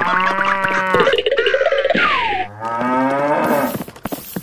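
Cow mooing: a long moo at the start, then a second moo about two and a half seconds in.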